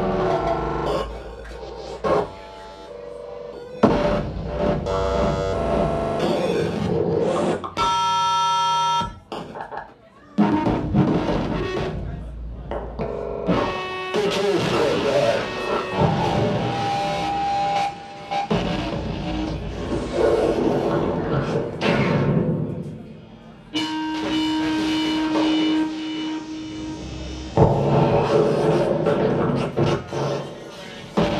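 Live music from two performers at a table of electronic gear, cutting abruptly from one dense layered texture to the next every few seconds, with held tones in between and brief drops in level.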